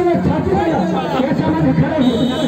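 Crowd chatter: several people talking over one another close by.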